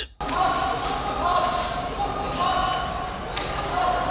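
Live arena sound of a sumo bout in a large hall: the referee's short drawn-out calls over the room's steady hum, with a few dull thuds from the wrestlers' bodies.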